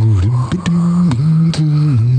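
A cappella vocal intro: low sung bass notes stepping from pitch to pitch, with beatboxed clicks about twice a second keeping the beat.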